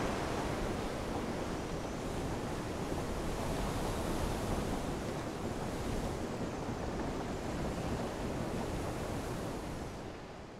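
Steady rushing outdoor noise, like wind and surf, easing off slightly near the end.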